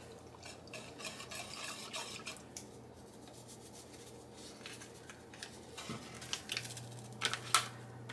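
Wire whisk stirring pectin and sugar into raspberry juice in a stainless steel saucepan: light, irregular ticks and scrapes of the wires against the pot, with a few sharper clinks near the end.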